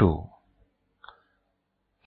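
A man's word trails off, then a quiet room with one short, faint click about a second in.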